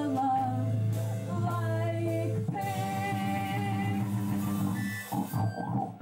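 Live band playing a song with a singer's voice over the instruments; the music breaks up near the end.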